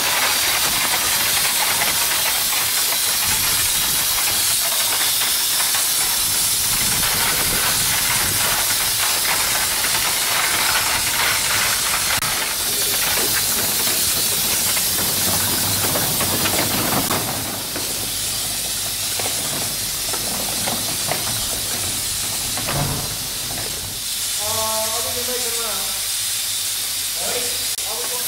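Steady hiss of escaping steam from the 1897 Soame steam cart's steam engine, easing slightly about two-thirds of the way through. Voices come in near the end.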